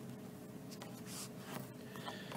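Faint scratching and light taps of a stylus writing on a tablet screen.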